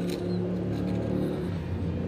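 A motor vehicle's engine running: a low, steady hum whose pitch shifts slightly about halfway through.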